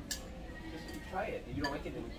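Eating utensils clinking against ceramic bowls at a table: a sharp click just after the start and another about a second and a half in.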